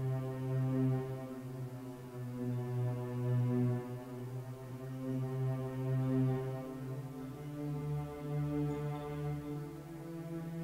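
Music: a low, sustained drone tone rich in overtones, swelling and fading slowly, which steps up to a higher pitch about seven seconds in.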